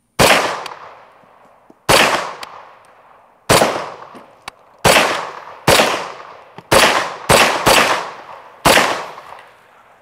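M1 carbine firing nine semi-automatic shots of .30 Carbine at an uneven pace, the later shots coming quicker, each crack followed by a ringing echo that dies away over about a second.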